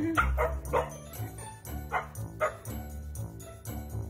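Husky giving about five short barks, three in quick succession in the first second and two more about two seconds in, over background music.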